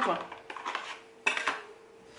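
Small cosmetic containers being handled: a few light clicks and then one sharper clink with a brief ring, like a plastic cap or packaging knocked together, a little past the middle.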